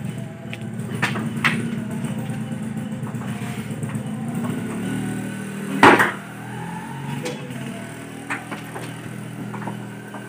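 Steady low rumble of a vehicle engine running, with a few sharp clicks and one loud knock about six seconds in.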